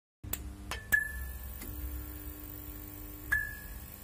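VHS-style intro sound effects: a steady low hum under a handful of sharp clicks, the two loudest, about a second in and near the end, each followed by a short high beep, with a held lower tone between them.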